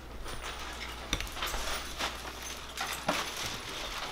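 Rustling and a few light knocks as bags and boxes are carried and handled.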